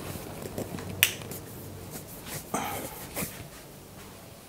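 A single sharp click about a second in, followed by a few softer knocks and rustles of handling.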